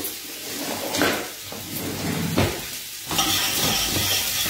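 Chopped onion, celery and carrot sizzling in hot oil in a stainless steel pot, with a couple of short knocks. The sizzle grows louder about three seconds in as the vegetables are stirred, the start of a soffritto.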